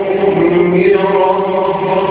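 A man's voice reciting the Quran in drawn-out, melodic tajweed chant, holding long notes and moving to a new note about halfway through.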